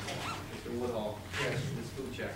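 Quiet, indistinct speech in the meeting room over a steady low hum.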